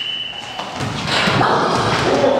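A steady high-pitched tone cuts off about half a second in. Then a basketball thuds on the hard gym floor amid the noise of children's voices.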